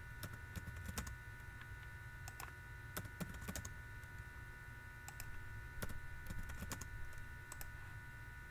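Computer keyboard keys clicking faintly in sparse, irregular keystrokes, over a steady low hum.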